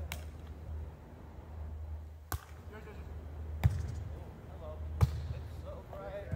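A volleyball being hit back and forth in a rally: four sharp smacks, one to two seconds apart, the last two the loudest.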